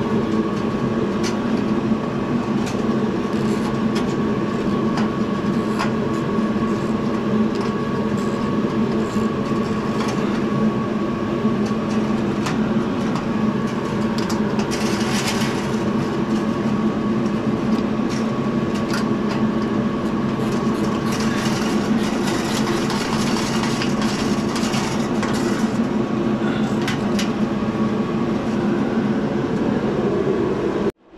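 A steady, loud mechanical drone with a low hum and a thin higher tone, over which small clicks and taps of a screwdriver on the sheet-metal fixture come and go.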